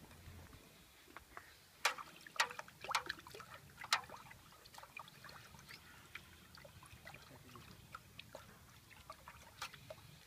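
A spoon clicking against a small jar while scooping washing powder, a few sharp clicks about two to four seconds in, then quieter stirring and sloshing of water in a metal pot as the powder is mixed in.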